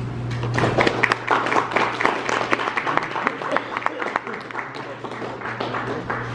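An audience applauding. The clapping begins about half a second in and thins out toward the end.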